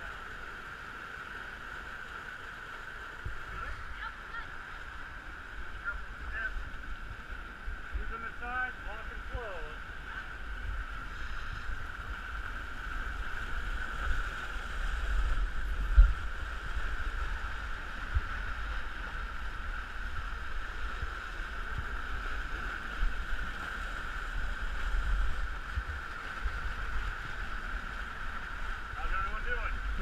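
Steady hissing background with low rumbling and bumping from a body-worn camera moving against wind and rock, louder in the second half, with one sharp knock about halfway through. Brief faint voices come in around a third of the way in and again at the end.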